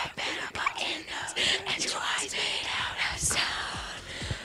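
Hushed, whispered voices of a small group, in short breathy fragments with no clear words.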